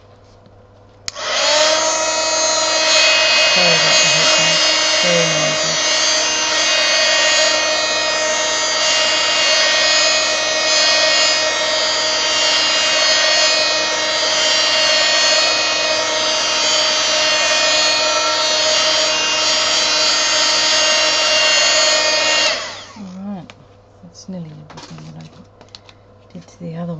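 Handheld craft heat gun switched on about a second in, its fan motor spinning up and then running with a steady whine over a rush of air for about 21 seconds before it is switched off.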